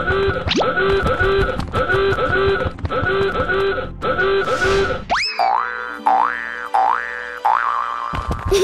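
Cartoon background music with a short bouncy phrase repeating about twice a second. About five seconds in it changes to a cartoon sound effect of rising glides repeating a bit faster than once a second.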